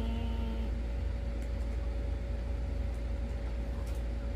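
A steady low rumble with a constant hum running underneath. A held pitched tone fades out in the first second.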